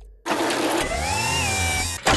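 Commercial sound effect of factory machinery: a dense mechanical rush that starts suddenly about a quarter of a second in, with a tone that slides up and then back down over it.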